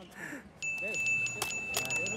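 A steady, high ringing chime tone that starts about half a second in and holds on: a comic sparkle sound effect.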